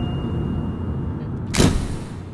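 A short rushing whoosh about one and a half seconds in, the kind of transition sound effect laid under a title card, over a low steady rumble.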